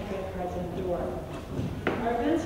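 A woman speaking into a microphone, with a short pause in the middle and a single sharp click just before the end.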